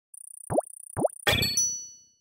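Animated logo sound effect: two quick rising bloops about half a second apart, then a bright chime that rings and fades away.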